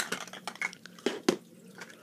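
Large plastic toy building blocks being handled and set down on a plastic tray: a few light clicks and knocks, the loudest two about a second in.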